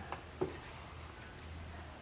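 Quiet background with a faint, steady low hum, a light click right at the start and a short soft knock about half a second in.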